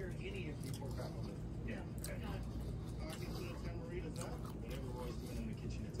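A man chewing a mouthful of pita sandwich with crunchy vegetables, faint over a steady low background rumble.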